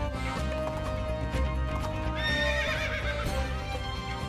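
A horse whinnies once about two seconds in, a high wavering call that falls in pitch and lasts about a second. Galloping hoofbeats sound under music.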